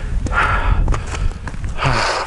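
Wind buffeting the microphone with a steady low rumble, and a person breathing heavily: a long breath out about half a second in and another breath near the end.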